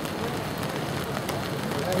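Steady hiss of rain falling on the ground and gravel, with faint voices underneath.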